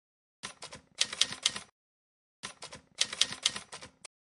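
Typewriter key-strike sound effect: two quick runs of clattering strikes, each about a second and a half long, with dead silence between them.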